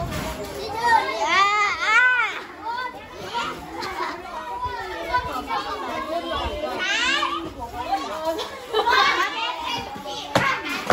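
A crowd of schoolchildren talking and calling out in high, excited voices, with louder bursts about a second or two in, around seven seconds in and again near nine seconds.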